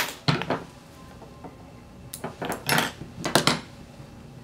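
Handling at a fly-tying vise while whip-finishing the thread: a sharp click at the start, then a cluster of light metallic clicks and rustles about two to three and a half seconds in.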